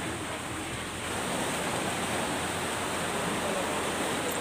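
Sea surf washing over a rocky shore: a steady rush of water that grows a little louder about a second in.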